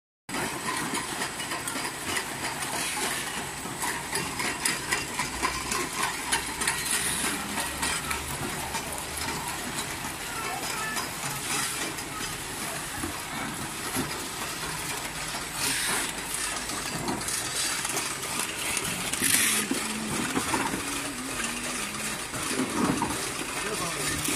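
Automatic tin-can paper-labelling machine running: a steady mechanical clatter with many small metallic clicks and clinks of cans, and a short hiss about every four seconds.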